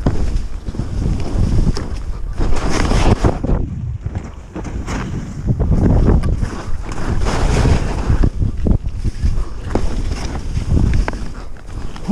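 Skis hissing and swishing through powder snow in surges with each turn, over heavy wind rumble on the microphone.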